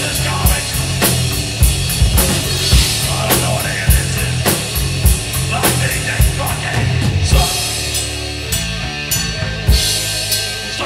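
Live heavy metal band playing an instrumental passage: a drum kit with a hard, regular beat of about two hits a second, over distorted electric guitar and bass guitar. The cymbals drop back for a couple of seconds near the end before a big hit.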